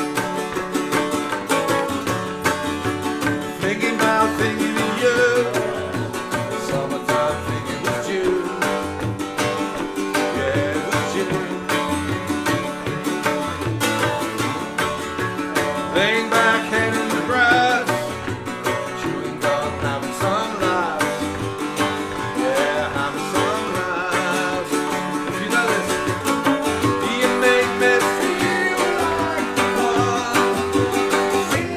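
A Welsh folk song in D played on a plucked cittern with tabla drums, a man singing over them.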